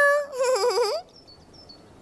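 A Teletubby character's high-pitched wordless vocal: a held "oooh" that turns into a warbling, wavering sound and stops about a second in. Faint short high chirps follow.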